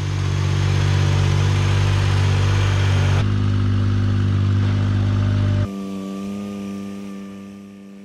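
Ventrac 4500Z compact tractor's engine running steadily up close, with a slight step up in pitch a few seconds in. Just past the middle the sound drops suddenly to a quieter, more distant steady engine note as the tractor drives up the trailer ramp.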